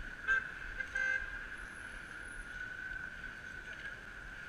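Two short car horn toots in city street traffic, the first near the start and a slightly longer one about a second in, over a steady traffic hum.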